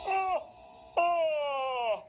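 A man yawning loudly on waking: a short vocal sound, then about a second later a longer, drawn-out one that slides down in pitch.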